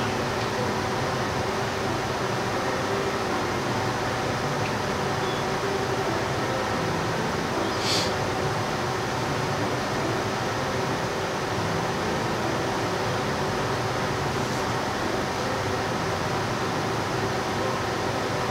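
Steady mechanical hum of room noise, like a running fan, with several faint steady tones in it. One faint short click about eight seconds in.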